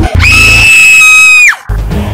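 A loud, high-pitched scream held at one pitch for over a second, falling off sharply at the end, over deep, heavy background music.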